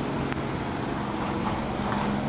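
A steady low mechanical hum, with a faint tick about a third of a second in.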